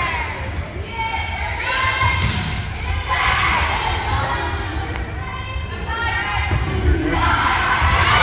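A volleyball struck several times during a rally, the sharp hits echoing in a large gymnasium, the loudest near the end. Players and spectators call out and shout over it.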